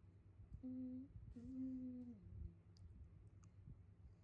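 A woman humming quietly with closed lips: two held notes, the second a little longer and sliding down at its end, then a few faint clicks.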